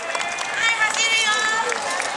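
A group of dancers' voices calling out over quick footsteps on paving, with scattered sharp clicks.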